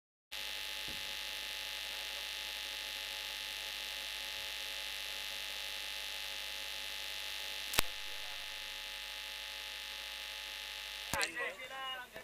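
Steady electrical hum made of several fixed tones, with one sharp click about eight seconds in. A voice starts speaking near the end.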